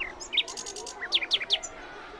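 A songbird singing: a couple of chirps, a quick run of about half a dozen very high notes, then several short notes that slide down in pitch.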